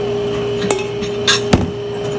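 Metal utensils and dishes clinking and knocking on a stainless-steel counter: a few sharp knocks, the loudest about one and a half seconds in, over a steady hum.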